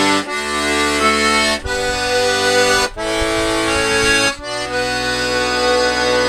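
Button accordion playing an instrumental break in a folk tune: full held chords that change with short breaks about every one and a half seconds.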